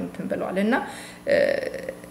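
A woman speaking Amharic, with a drawn-out sound a little past halfway.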